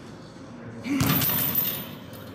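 A single gloved punch landing on a boxing bag about a second in, followed by a metallic jingle of its hanging chains that fades out.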